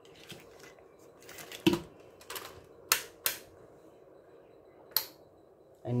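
A few sharp, scattered plastic clicks and knocks from a mains power adapter and its plug cable being handled.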